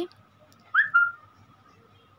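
A short whistle-like chirp about a second in: a quick rising note followed by a briefly held, slightly lower tone.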